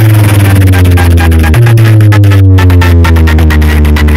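Electronic dance music played very loud through a large stack of DJ bass and mid speaker cabinets being sound-tested: a heavy held bass note that steps up about one and a half seconds in, under a slowly falling tone and fast ticking beats.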